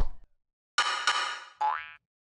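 Cartoon-style sound effects of a logo sting. A short hit comes at the start, then a buzzy held tone about a second in, and a quick rising glide near the end.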